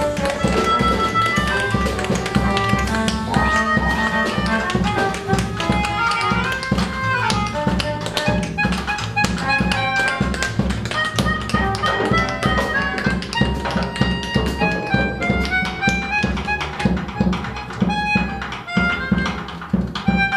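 A free-improvising jazz ensemble playing live: bowed cello and a reedy melodica line over double bass. Quick tapping percussion strikes run all through.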